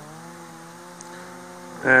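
An engine running steadily at one even pitch, a low hum with overtones, as background machinery noise. A man's voice starts just before the end.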